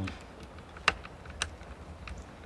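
Davis & Sanford Provista 18 tripod's center-column crank handle being turned by hand to lower the column, giving light ticks with two sharper clicks about half a second apart near the middle.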